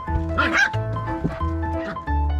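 Background music, with a husky puppy giving one short, high cry about half a second in.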